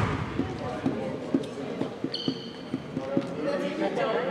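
A basketball bouncing on a hardwood gym floor, a thump about every half second, over background chatter in the gym. A brief high-pitched tone sounds just after the midpoint.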